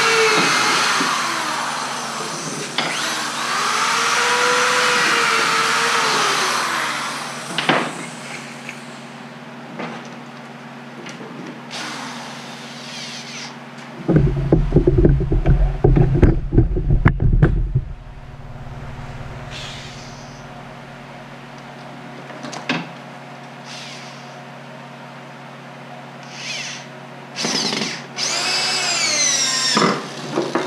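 Power drill driving screws into a wooden hive box: two runs in the first seven seconds, the motor speeding up and slowing with each screw, and another run near the end. In the middle come a few seconds of loud, low rumbling knocks.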